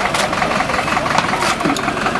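An engine running steadily, mixed with people talking and short scraping clicks.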